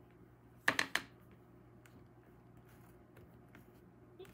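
Two or three sharp clacks of hard craft supplies being set down on the work table about a second in, followed by faint ticks of handling.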